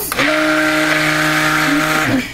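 Stick blender running in a bowl of soap oils: a steady motor hum at one pitch with a whirring hiss. It spins up just after the start and cuts off right at the end.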